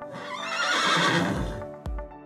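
A horse whinnying once, shaky in pitch and about a second and a half long, over background music. Near the end a drum beat comes in, about two beats a second.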